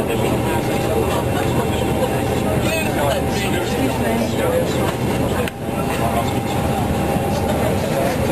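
Steady airliner cabin noise, with indistinct voices of people talking over it; the noise dips briefly about five and a half seconds in.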